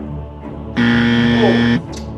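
A loud, steady buzzer sounds for about a second and cuts off: a quiz time's-up buzzer, over background music.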